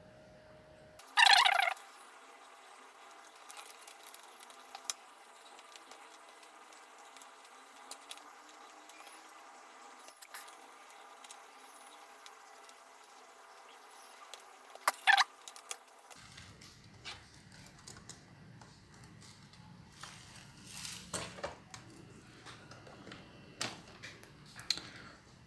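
Handling noises of a laptop being reassembled: small clicks and taps of parts and connectors over low room tone. A brief louder noise comes about a second in, and a pair of sharp clicks around fifteen seconds.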